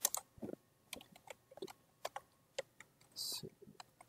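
Typing on a computer keyboard: a run of irregular keystrokes, with a short hiss a little after three seconds in.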